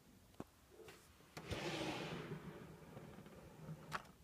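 A drawer of an IKEA Alex drawer unit being pulled open: a short sliding rush about a second and a half in that fades over the next second or two, with a light click before it and a sharper click near the end.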